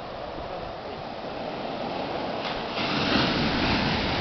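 Ocean surf breaking and washing up a sand beach as a steady rush of water. It grows louder about three seconds in as a bigger wave breaks.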